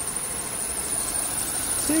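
Insects buzzing steadily at a high pitch, wavering slightly, over a low background rumble.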